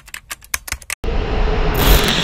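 Logo-sting sound effects: a quick run of typing-like clicks as a tagline is typed on screen, then after a brief gap a loud rushing noise with a low rumble that swells near the end.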